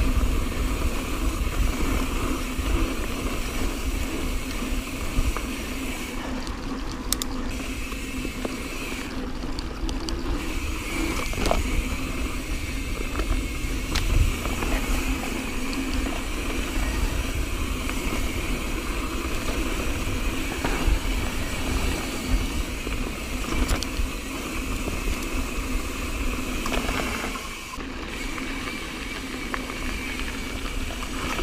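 Mountain bike rolling along a dirt singletrack trail, with wind rumbling on a mounted action camera's microphone and the occasional rattle or knock of the bike over bumps.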